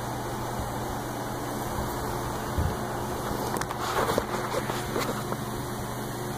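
Steady low background hum, with a few light, irregular clicks and handling noises in the second half.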